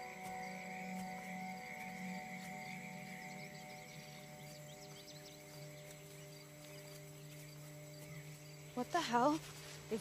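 A sustained drone of film-score music with held low tones, the lowest shifting down partway through. A high insect chirring fades out in the first few seconds. A voice comes in briefly near the end.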